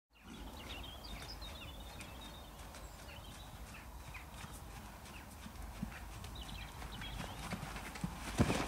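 A horse cantering on a soft arena surface, its hoofbeats faint and soft against a steady low outdoor rumble.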